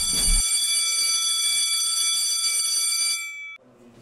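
School bell: an electric bell or buzzer giving one steady, loud, high-pitched tone, the signal that the lesson is over. It cuts off a little over three seconds in.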